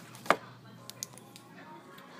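One sharp knock about a third of a second in, then two fainter clicks about a second in, over faint background music.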